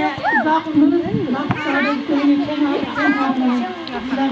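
Several voices talking over one another, among them children's high-pitched voices.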